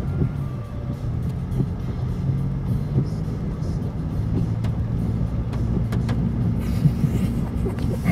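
2019 Ford Ranger pickup's engine running steadily at low speed as it drives through floodwater, heard from inside the cab, with a low rumble and a wash of water and tyre noise under it.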